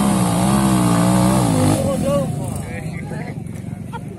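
Trail motorcycle engine revving hard under load on a steep dirt climb, its pitch rising and falling, then dropping away about two seconds in. Short shouts from onlookers follow.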